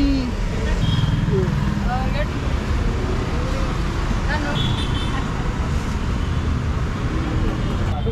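Steady rumble of road traffic passing on the street, with people talking faintly in the background.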